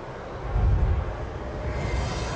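A deep, noisy rumble from a film soundtrack, swelling about half a second in.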